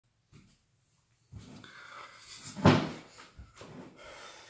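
A person moving into place and sitting down close to the microphone: rustling and shuffling, with one loud knock a little after halfway and a few smaller knocks after it.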